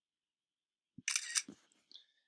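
macOS screenshot shutter sound: a short, crisp camera-shutter click about halfway through, marking a selected screen region being captured.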